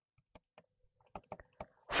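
Scattered light clicks and taps of a stylus on a pen tablet while handwriting is written, with a few more distinct taps a little past a second in.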